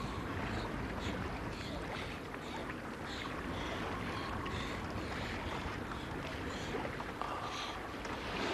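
Steady wind and sea noise on a sailboat out on open water, with small splashes of water against the hull.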